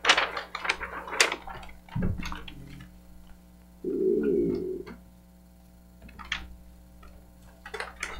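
Large paper plan sheets being handled and unrolled on a table, with crackling and crinkling clicks at first, a dull thump about two seconds in, and a brief muffled murmur around four seconds in. Then a few isolated clicks over steady room hum.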